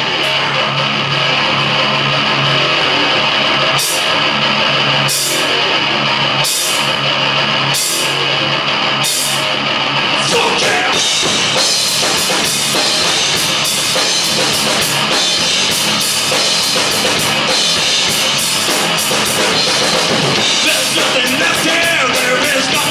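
A live rock band playing: electric guitar and bass guitar holding a low chord under a drum kit, with evenly spaced cymbal hits about once a second at first, then a faster, busier beat from about halfway.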